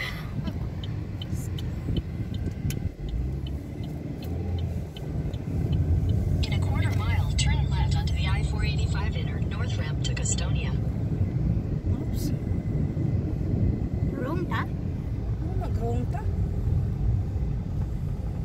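Car cabin noise as the car pulls away from a stop: a steady low engine and road rumble that grows louder about five seconds in as it picks up speed. A quick, light, regular ticking sounds in the first few seconds.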